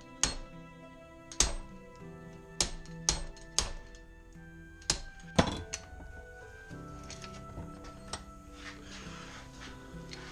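Sharp metal knocks and clinks as a two-jaw puller is fitted onto a CV axle held in a bench vise, about eight hits in the first six seconds with the loudest near the middle, then they stop. Steady background music plays throughout.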